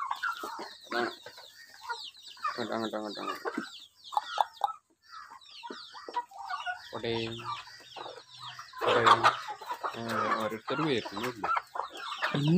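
Chickens clucking in a mixed flock with muscovy ducks: irregular runs of low clucks, loudest around the middle and near the end, with short high chirps throughout.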